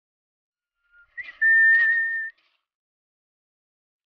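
A high whistled note: a brief faint lower note, then a loud, steady high note held for just under a second.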